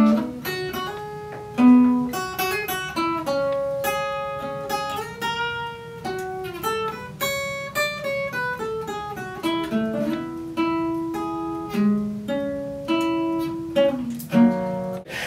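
Solo acoustic guitar playing a slow instrumental line: single picked notes, each ringing out and fading, with a few fuller chords among them.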